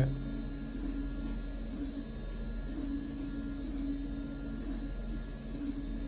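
Room tone: a steady low electrical hum with a thin, steady high whine, and faint broken low tones coming and going in the background.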